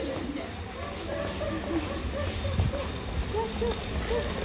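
Faint, indistinct voices in the background, short scattered syllables over a steady low rumble.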